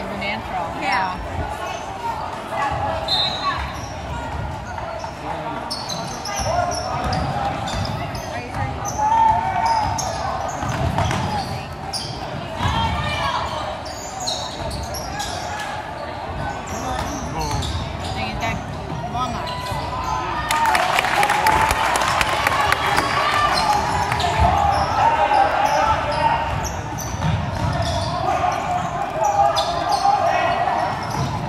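Basketball game play in a large, echoing gym: the ball bouncing on the hardwood court amid a steady mix of players' and spectators' voices. The sound grows louder about two-thirds of the way in.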